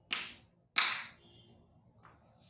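Chalk striking and scraping on a chalkboard in two short strokes, about two-thirds of a second apart, as a numeral is written.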